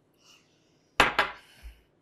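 Two sharp clinks of tableware at a dinner table, a fifth of a second apart, then a dull low thump.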